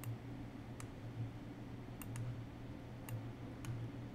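About six short, sharp computer mouse clicks, spread unevenly over a few seconds, over a steady low hum.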